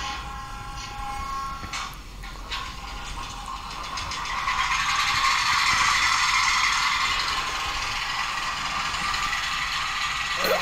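DCC sound decoder in an HO-scale NSWGR 48 class diesel locomotive, switched on with F8, playing its diesel engine start-up through the model's small speaker. There are a few clicks about two seconds in, then the engine sound builds from about four seconds and settles into a steady idle with little bass.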